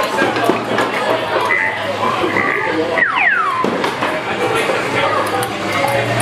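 Busy arcade din: game-machine music and electronic effects over background voices, with a falling electronic sweep about three seconds in.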